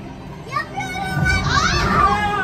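Children's excited high-pitched shouting and squealing, without clear words, rising to a loud squeal near the end, over a low rumble.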